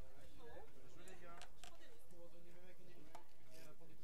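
Indistinct voices of several people talking at a distance, with a few sharp clicks scattered through, about a second and a half in and again near the end.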